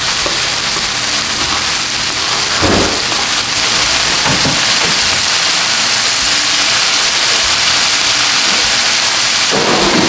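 Spiced shawarma chicken pieces sizzling in oil in a frying pan: a loud, steady hiss, with a few soft knocks.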